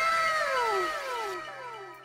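Synthesized 'correct answer' checkmark sound effect: several tones slide downward in pitch together and fade away over about two seconds.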